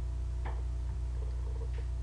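A pause in the narration filled by a steady low hum in the recording, with a faint short sound about half a second in.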